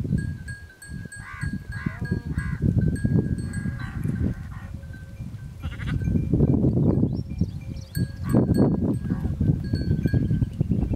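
Sheep bleating a few times, short calls in the first half, over bursts of low rumbling noise that are the loudest sound.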